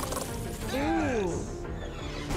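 Sci-fi film sound effects, mechanical in character, over music, with a single pitched tone that rises and falls about a second in.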